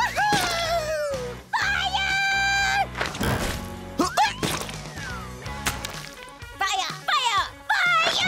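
Animated-cartoon soundtrack: music with comic sound effects, including sliding pitch glides that fall and rise and several sharp hits.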